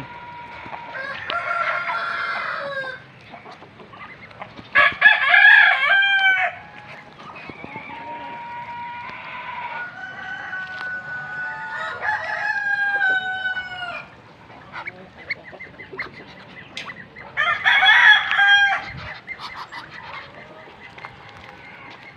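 Roosters crowing: two loud, long crows, one about five seconds in and another around eighteen seconds. Quieter crows and calls from other birds come in between.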